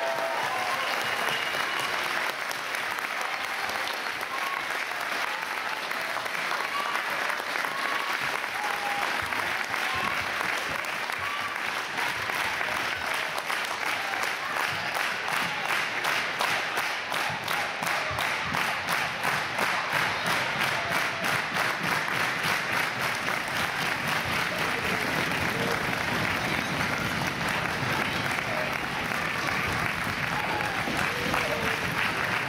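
Audience applauding; about halfway through the clapping falls into a steady beat in unison, then loosens back into ordinary applause near the end.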